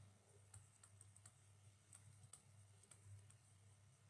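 Near silence with a string of faint, irregular clicks: a stylus tapping on a tablet screen during handwriting.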